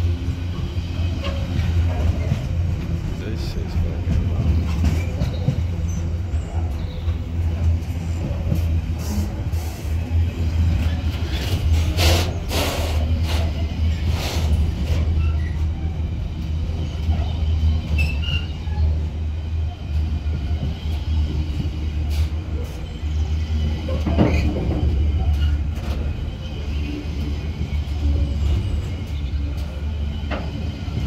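Container freight train wagons rolling past, a steady low rumble of wheels on the rails, with a cluster of sharp clicks about twelve to fifteen seconds in.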